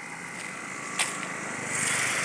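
Street background noise, a steady hiss, with a single sharp click about a second in. The noise swells slightly near the end.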